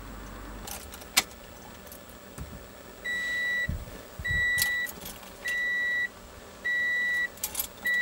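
A sharp click about a second in, then a 2014 Toyota Corolla's dashboard warning chime: five identical high beeps, each about half a second long, repeating evenly a little over a second apart.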